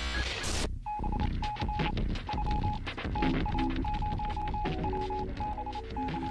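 Electronic beeps at one steady pitch, keyed on and off in an irregular pattern of short and long pulses, over lower shifting tones and clicks, after a brief burst of static about half a second in.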